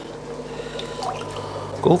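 Aquarium air stones bubbling steadily in the tanks, with water trickling, over a low steady hum.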